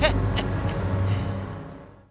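Cartoon race car engine sound effect running with a steady low hum, fading out near the end. A short laugh comes right at the start.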